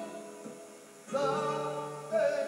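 Male flamenco singer singing a siguiriya in cante jondo style: a long held note fades out, and after a short lull a new sung phrase enters about a second in. Flamenco guitar accompanies him.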